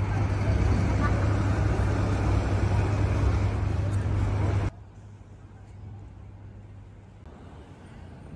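City street background: a steady low traffic drone with the voices of people around. It cuts off abruptly a little past halfway through, giving way to a much quieter street background.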